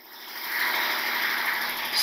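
Whiteboard marker dragged across the board in one long continuous stroke, a steady scraping hiss that builds over the first half-second and then holds.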